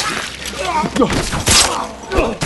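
Chain-link fence rattling hard as a man is shoved against it, with two loud rattles at the start and about halfway through, mixed with pained grunts and groans.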